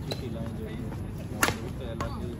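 Badminton racket striking a shuttlecock: one sharp crack about one and a half seconds in, with a fainter click at the start, over low background voices.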